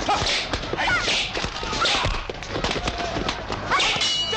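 Fight-scene sound: a steady run of thuds and slaps from blows under shouting and yelling voices, with a sharp cry rising about every second.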